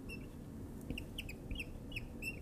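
Dry-erase marker squeaking against a whiteboard while writing, a quick series of short high squeaks, most of them in the second second.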